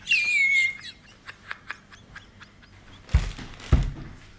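A man laughing hard: a high squeal of laughter that falls in pitch, then faint wheezy clicks, and two louder gasps of laughter near the end.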